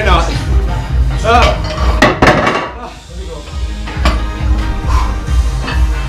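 Background music with a steady beat and short shouts from men, with a quick cluster of sharp metal clanks from barbell equipment about two seconds in.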